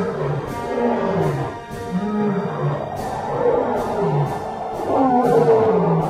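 Lion roaring in a series of low, drawn-out calls over dramatic music with a steady ticking beat.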